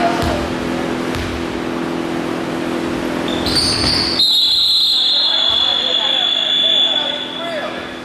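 A basketball bouncing on a hardwood gym floor, a few sharp knocks, with players' voices murmuring over a steady low hum. About four seconds in a high steady tone starts and runs for about three seconds.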